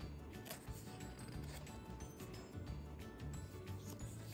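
Quiet background music with soft, steady low notes, with faint paper rustling as a book page is turned near the end.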